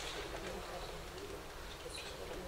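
Faint bird calls in low gliding notes that rise and fall, over a steady low hum, with a light click at the very start.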